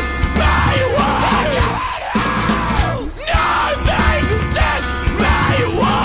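Screamo/post-hardcore song: loud, dense band playing with a screamed vocal over it.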